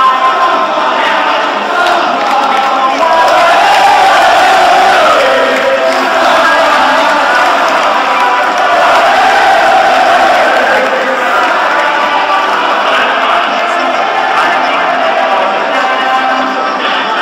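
A large crowd of football ultras chanting in unison in the stands, loud and unbroken.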